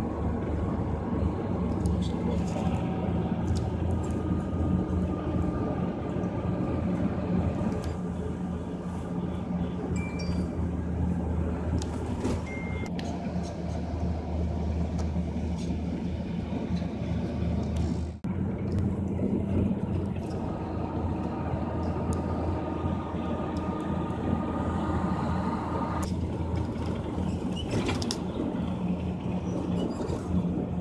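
Engine and road noise of a vehicle climbing a winding mountain road, heard from inside the cabin as a steady low hum, with a brief break about eighteen seconds in.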